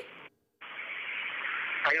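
Steady hiss of an open telephone line. It cuts out for about a quarter second near the start, then comes back. A man's voice answers over it near the end.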